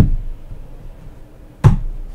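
Tarot cards being knocked down onto a tabletop: two dull thumps, one right at the start and another about a second and a half later.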